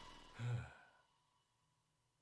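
A brief low sigh about half a second in, then silence.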